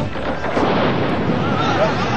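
Cartoon sound effect of a rockfall: boulders released from a wooden barrier, tumbling and crashing down in a dense rumble. Men's cries and screams join in near the end as the rocks land on the soldiers below.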